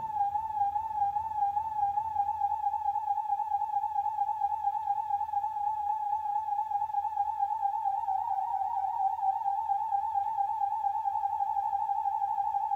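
Synthesizers.com Q169 Oscillator++ playing a steady sine-wave tone with gentle vibrato: an LFO wobbles its pitch up and down a few times a second. About eight seconds in the wobble briefly gets faster and deeper, then settles back.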